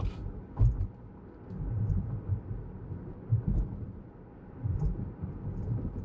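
Cabin sound of a Lexus RX350 on 20-inch wheels driving over a rough, rocky road: low rumble with irregular thuds from the tyres and suspension as it takes the bumps, and a few faint clicks.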